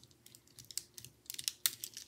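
Plastic gel pens clicking and knocking against each other as a handful is shuffled, a few light irregular clicks that come faster in the second half.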